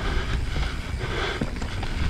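Wind rumbling on the action camera's microphone while an Evil Wreckoning mountain bike rolls down a dirt singletrack, its tyres crunching over the ground with a few faint knocks from the bike.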